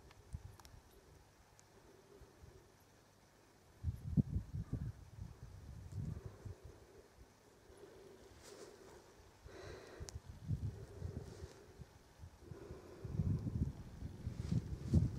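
Wind buffeting the camera microphone in irregular low gusts, the strongest about four seconds in and again near the end, over a quiet open-air background.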